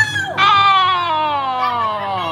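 A person's voice: a brief high "oh!" right at the start, then a long unbroken cry that slides steadily down in pitch.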